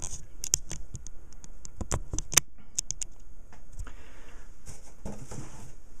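Quick, irregular small clicks and scratches as a dial spring balance is handled and reset to zero, then a soft brushing rustle about four seconds in.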